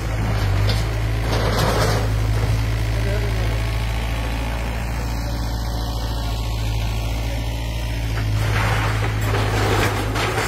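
Kobelco excavator's diesel engine running with a steady low drone, with two swells of noisier sound, about a second and a half in and again near the end.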